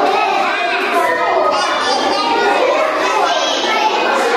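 Many schoolchildren talking and calling out at once, their voices overlapping into a continuous excited chatter.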